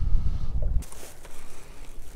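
Wind buffeting the microphone: a low rumble that drops away suddenly about a second in, leaving a fainter hiss.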